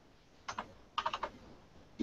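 Keystrokes on a computer keyboard as a number is typed into a field: a single press about half a second in, then a quick run of several presses around one second in.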